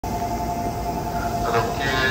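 Keikyu New 1000 series electric train standing at the platform, its equipment giving a steady two-tone hum over a low rumble; a voice announcement starts near the end.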